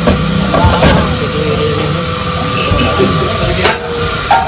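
Steel serving utensils clinking sharply twice against a steel bowl and a large biryani pot, over a steady mechanical hum.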